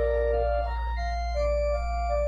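Church organ playing a moving melody of short notes over a deep bass note held throughout.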